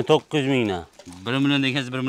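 A man's voice speaking or calling in drawn-out syllables, without clear words.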